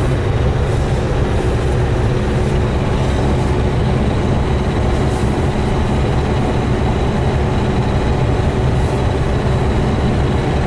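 Steady drone of a GAZelle van's Cummins diesel engine and road noise while driving, even in level and heaviest in the low end.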